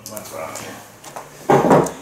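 A cut drywall panel being pried off a wall: a brief scraping crunch near the end, under faint voices.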